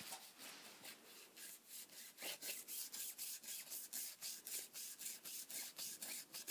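Tip of a water-reveal pen scrubbing back and forth across a water-reveal colouring page: faint, quick, even rubbing strokes, several a second, which grow stronger about two seconds in.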